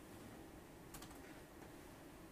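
Near silence: quiet room tone with one faint click about a second in and a couple of weaker ones just after it.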